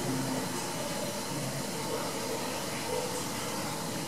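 Steady hiss with a faint low hum.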